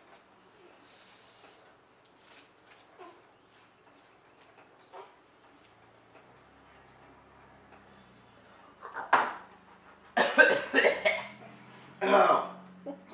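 A man drinking a thick blended shake in one go: several seconds of quiet swallowing, then coughing and sputtering in the last few seconds, a reaction to the foul-tasting drink.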